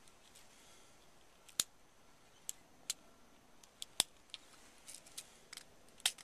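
Small sharp metallic clicks, about seven scattered over a few seconds with the loudest about four seconds in, as a percussion cap is pressed onto a nipple of a black powder revolver's cylinder with a cap holder.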